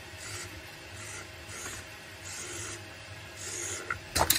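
Small electric motors running on a workbench: a low hum and a faint steady tone, with a short rasping rush about once a second.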